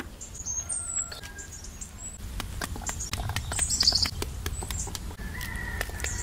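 A run of sharp, irregular knocks as a pomegranate half is beaten with a utensil to knock out its seeds, with small birds chirping at intervals.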